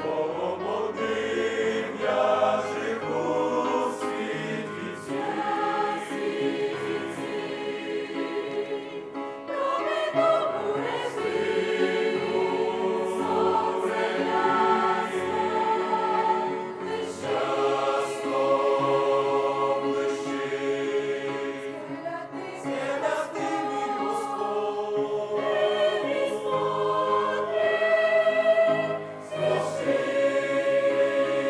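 Mixed youth choir of men's and women's voices singing a hymn in parts, with held chords.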